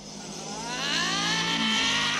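Motorcycle engine sound effect from an animated film, whining up in pitch and growing louder as the bike approaches, then holding a steady high note.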